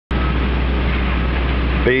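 Steady low rumble and hiss inside a parked car's cabin, from the engine at idle and the ventilation fan.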